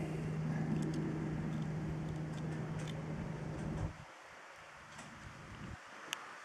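A steady, low mechanical hum with one deep tone that cuts off suddenly about four seconds in, leaving a quiet background with a few faint ticks.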